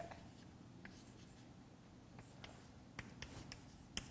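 Chalk on a blackboard: faint short strokes and taps of writing, more of them in the second half.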